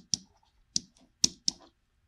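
Felt-tip marker tapping and stroking on a whiteboard while letters are written, a handful of short, sharp clicks spaced irregularly.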